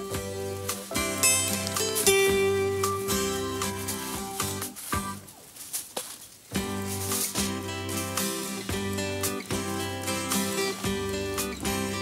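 Background music of plucked guitar notes, with a brief lull about five seconds in.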